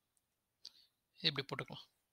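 A pause, then a short spoken word from a man's voice a little past one second in. A faint soft click comes just before it.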